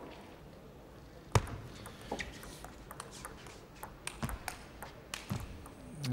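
Table tennis ball clicks: one sharp, loud click about a second and a half in, then a few fainter taps, over low hall ambience.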